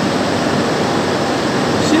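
Steady, even rushing background noise with no distinct events, like a fan or air blower running.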